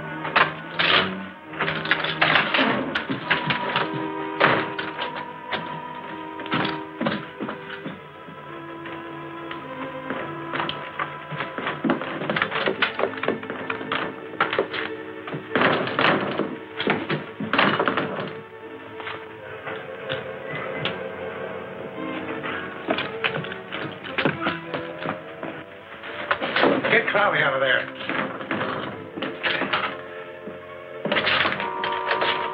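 A film fistfight's repeated blows and crashing, splintering wooden chairs, over a dramatic orchestral score that runs throughout. The crashes come in flurries near the start, in the middle, and again near the end.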